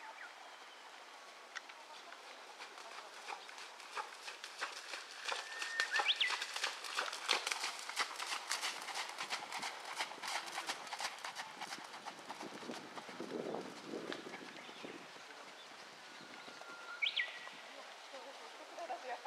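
Thoroughbred horse trotting on a sand arena, its hoofbeats thudding in a steady two-beat rhythm. They grow louder as it passes close, about a third of the way in, then fade again.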